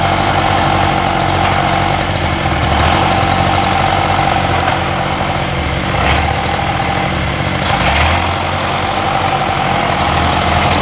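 John Deere 6010 tractor's diesel engine running steadily in a steady high whine. Its low note shifts briefly a few times as the load changes.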